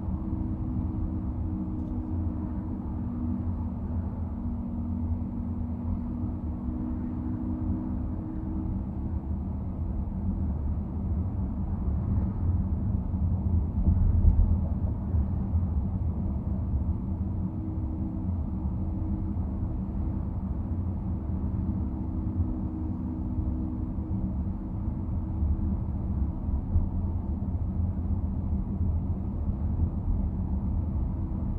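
Steady low road and engine rumble of a car driving, heard from inside the cabin. A faint hum fades in and out, and there is one louder bump about halfway through.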